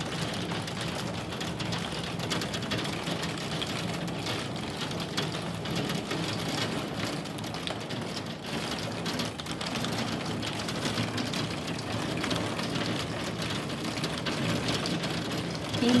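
Heavy downpour beating steadily on a window pane, heard from indoors: a dense, rapid patter of drops that keeps an even level throughout.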